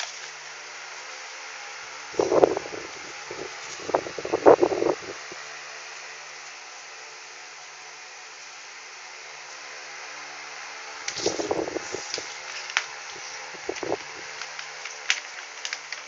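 Steady fan-like whirring through the whole stretch. Two clusters of louder knocks and rattles break in, about two to five seconds in and again about eleven to fourteen seconds in, with a few sharp clicks near the end.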